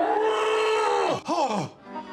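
A man's voice yelling in drawn-out cries, each one sliding down in pitch at its end: one long cry, then two short ones near the end.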